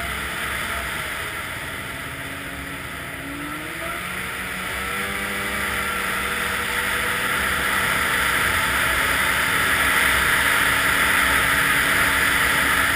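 Snowmobile engine running while riding along a snow trail, over a steady rushing noise. About four seconds in, the engine pitch rises and the sound grows louder as the machine speeds up.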